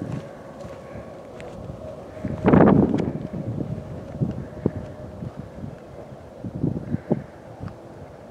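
.30-06 rifle shot heard as a single dull boom about two and a half seconds in, over wind on the microphone, with a few small ticks after it.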